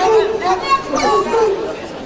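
A crowd of high school spectators shouting and calling out in a gymnasium, many voices overlapping at once.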